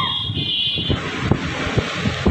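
Motorcycle engines of a street rally, with wind buffeting the microphone. A high steady tone sounds through the first second.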